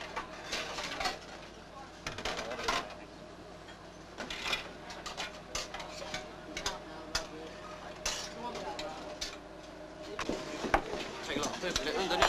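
Metal serving spoons and cutlery clinking and scraping against stainless steel food trays and serving pans, in irregular clinks throughout, busier near the end.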